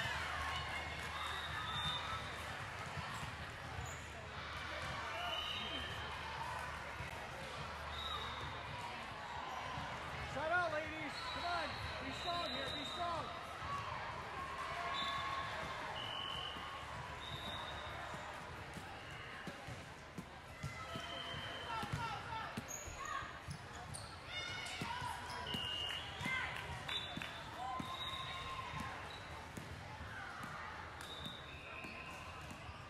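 Indoor volleyball gym ambience: balls being struck and hitting the hardwood floor, short high-pitched squeaks scattered throughout, and echoing voices of players and spectators. The loudest impact comes about ten seconds in.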